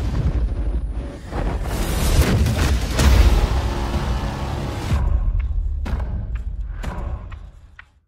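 Cinematic trailer music with heavy, deep booming hits a second or two apart, the loudest about three seconds in; after a last hit about five seconds in it thins out and fades to silence just before the end.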